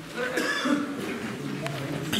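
A cough about half a second in, among the voices of choir members between sung passages.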